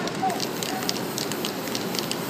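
Spray-paint art being made on poster board: a quick run of short, sharp hisses and crackles, several a second, from brief spray-can bursts and a gloved hand working the paint on the board.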